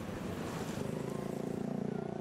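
A group of Harley-Davidson motorcycles riding by, their V-twin engines running steadily.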